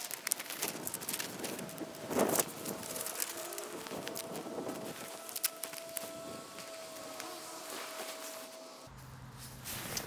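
A large sheet of paper crackling and rustling as it is smoothed by hand and taped onto a granite gravestone, in many short irregular crackles with a louder rustle about two seconds in. A faint steady hum sounds behind it and stops near the end.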